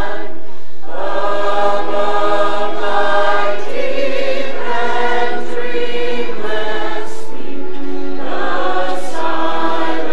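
A mixed choir of men and women singing in harmony, holding long notes phrase by phrase, with a short break for breath just after the start.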